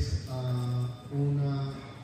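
A man's voice in a drawn-out, chant-like delivery, holding three steady low notes of about half a second each.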